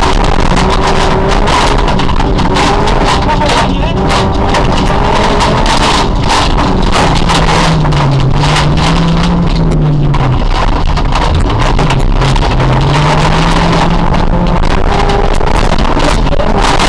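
Honda Civic rally car's engine running hard at speed, heard from inside the cabin. Its pitch holds, then falls and climbs again more than once from about halfway through as the driver lifts and accelerates. Loud road, gravel and wind noise runs underneath.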